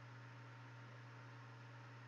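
Near silence: room tone with a steady low hum and faint hiss.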